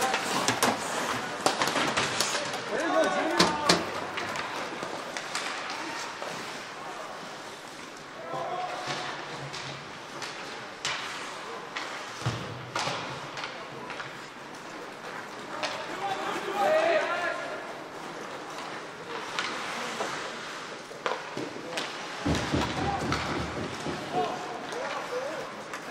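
Ice hockey in an indoor rink: sharp clacks of sticks and puck and thuds against the boards throughout, with shouting voices of players and onlookers at intervals.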